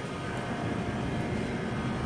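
A steady low rumble of outdoor background noise, even throughout, with faint steady tones over it.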